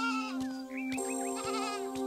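Sheep bleating: one wavering bleat at the start and another past the middle, over sustained background music notes.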